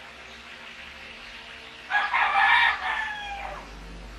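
A rooster crowing once, starting about halfway through: a single call of about a second and a half, with its pitch falling away at the end.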